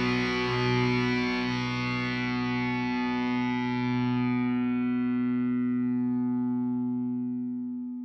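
Final chord of a rock song on distorted electric guitar, left ringing and slowly dying away, fading out near the end.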